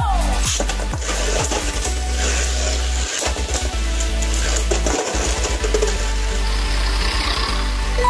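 Background electronic music over the whir and clatter of two Beyblade Burst tops spinning and colliding in a plastic stadium.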